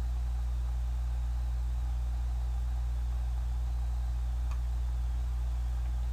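A steady low hum with a faint even hiss underneath and no other events: the recording's own background noise.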